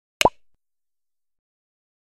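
A single short pop sound effect in an edited title card: a click with a quick upward-gliding tone, over within about a third of a second.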